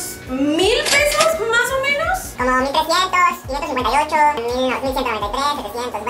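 A woman's voice talking over background music.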